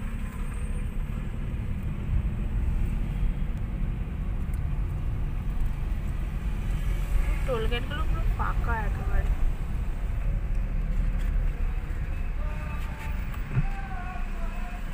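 Steady low rumble of a car's engine and tyres, heard from inside the cabin while driving. A brief voice comes in about halfway through.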